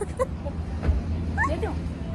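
A short rising vocal call about one and a half seconds in, over a steady low rumble.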